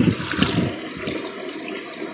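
Water from a garden hose pouring into a plastic bucket already part full, loud for the first moment, then settling to a steadier, quieter pour within the first second.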